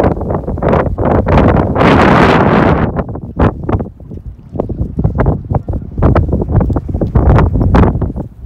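Wind buffeting the microphone in uneven gusts, a low rumble with crackles, loudest in a long gust about two seconds in.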